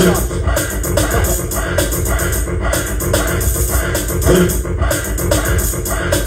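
Loud music with a beat, mixed live by a radio DJ.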